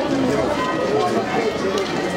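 Crowd of many people talking at once while walking over cobblestones, with footsteps mixed into the chatter.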